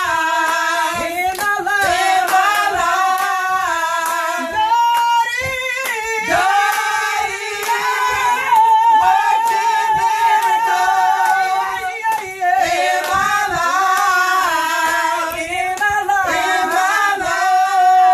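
A group of female voices singing a gospel song together, with long held notes and vibrato.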